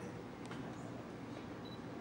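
Digital SLR shutter firing once, a short click about half a second in, over a steady low studio hum.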